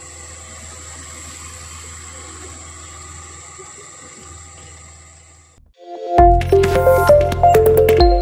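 A faint steady low hum fades out over the first five seconds or so. About six seconds in, a loud electronic logo jingle starts, with chiming tones and sharp hits.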